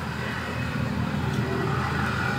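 Steady low rumble of a motor vehicle engine running, with a faint hum under a haze of outdoor noise.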